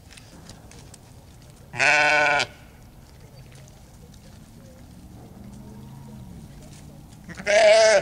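A sheep bleating twice, each bleat about half a second long, the first about two seconds in and the second near the end.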